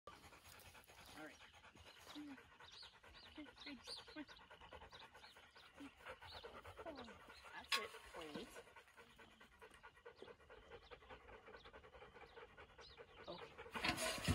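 A Rottweiler panting steadily, with one sharp click a little past halfway.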